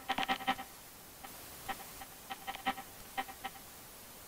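Glitchy digital sound effect: short stuttering bursts of a buzzy tone, packed together in the first half-second, then coming in sparser, fainter clusters. A steady static hiss sets in about a second in.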